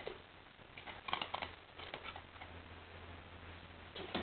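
English Setter puppy chewing a treat taken from the hand: faint quick clicks and smacks in two short runs about a second and two seconds in.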